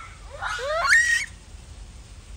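Japanese macaque calling: a quick run of rising calls about half a second in, the loudest near one second, ending on a briefly held high note.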